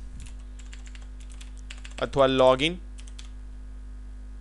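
Typing on a computer keyboard: a quick, irregular run of key clicks that stops a little over three seconds in. A short spoken sound cuts in partway through, over a steady low hum.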